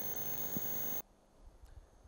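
Steady hiss with a thin high whine from a video-conference audio link, cutting off suddenly about halfway through as the feed is switched. Near silence follows, with a few faint clicks.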